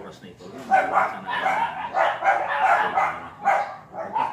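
A dog barking in a quick run of short, loud barks, starting about a second in and going on for about three seconds.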